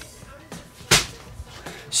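A single short, sharp knock about a second in, against quiet room tone.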